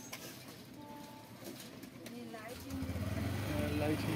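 Faint voices in the background, with a low steady hum that comes in about two-thirds of the way through and grows louder.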